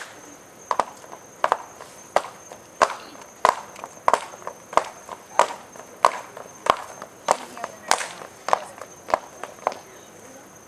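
Stepping routine: sharp, evenly spaced percussive hits of body percussion, about three every two seconds, some of them doubled, keeping a steady beat.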